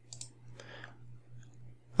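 A few faint computer-mouse clicks, with a steady low hum underneath.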